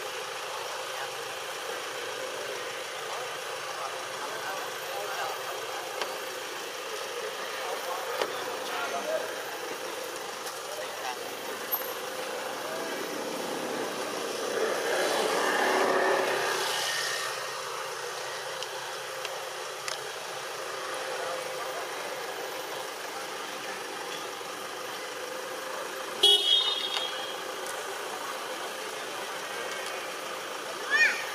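Steady outdoor traffic background in which a vehicle passes, rising and fading about halfway through. A brief, sharp high-pitched sound comes near the end.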